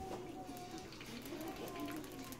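A faint voice in the background, with soft clicks and scrapes of a spatula stirring thick stew in a ceramic slow-cooker crock.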